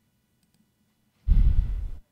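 A short, loud sigh breathed out close to the microphone, about a second in, the breath puffing on the mic.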